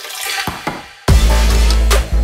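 Background electronic music: a noisy build-up with falling sweeps, then a heavy deep bass drop that comes in suddenly about a second in and holds loud.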